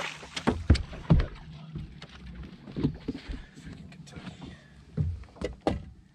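Irregular knocks and thumps on a bass boat's carpeted deck, about half a dozen, as a fish is landed and brought aboard, over a low steady background.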